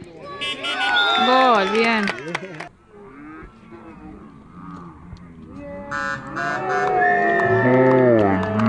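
Spectators shouting and cheering a goal. One long, loud shout falls in pitch about a second in, and a second round of shouting builds near the end.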